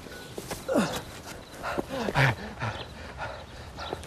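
Several short grunts and squeals falling in pitch, from the costumed piggy-bank character being tackled and wrestled to the grass, with soft thuds of the scuffle.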